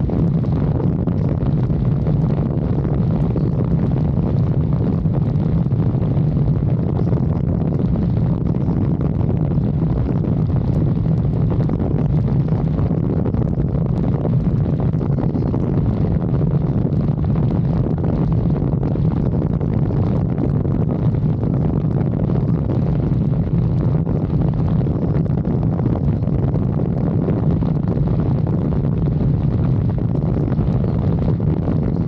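Motorcycle engine running steadily while riding, mixed with steady wind rush over the microphone.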